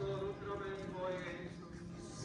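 Footsteps of many people walking in procession on stone paving, a dense patter of shoes. A man's voice is held briefly at the start.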